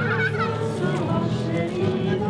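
Mixed group of adults and children singing together, unaccompanied. In the first half-second a few voices break into quick up-and-down pitch glides, like an imitated fowl call.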